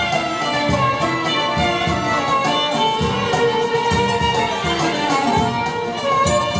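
Turkish art music ensemble playing an instrumental passage: a melody over a steady percussion beat.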